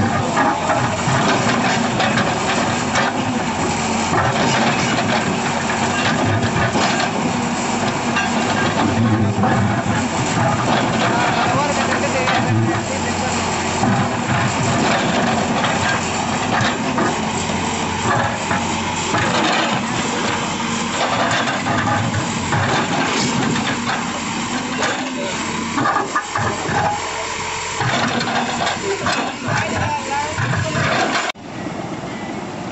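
A backhoe loader's diesel engine running steadily over a continuous rush of water pouring over a tank's weir.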